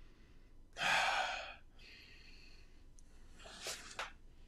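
A man sniffing a fragrance test strip: one long breath in through the nose about a second in, a fainter breath after it, and a short sniff near the end.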